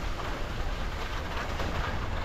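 Edges scraping and chattering over hard, rutted snow during a steady downhill run, with wind rumbling on the microphone.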